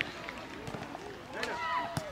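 Several voices calling and shouting at once across a football pitch, children and adults overlapping, with a couple of sharp knocks, one near the end.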